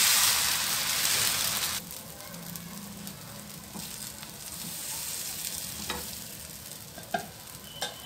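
Dosa batter sizzling on a hot griddle as a ladle spreads it round in circles. A loud hissing sizzle for the first two seconds or so drops suddenly to a quieter, steady sizzle, with a few light clicks.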